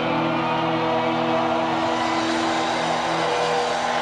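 A live heavy metal band's distorted electric guitars and bass holding one sustained closing chord that rings out steadily, with an arena crowd's noise underneath.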